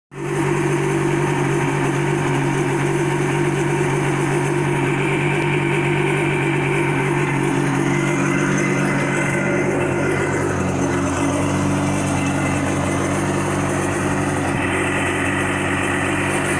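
Two-stroke engine of a 2001 Yamaha GP WaveRunner running at a steady idle on its trailer, out of the water. It runs smoothly and, by the owner's ear, sounds all right.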